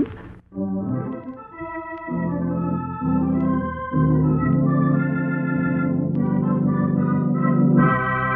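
Organ playing a music cue of held chords that change every second or so, growing fuller near the end.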